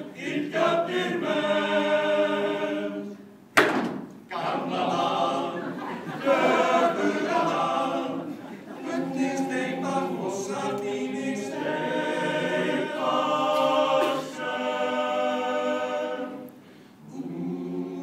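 A men's choir singing a cappella in several phrases with short breaks between them. One sharp click cuts in about three and a half seconds in.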